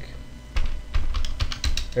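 Computer keyboard typing: a quick run of separate keystrokes as a word is typed.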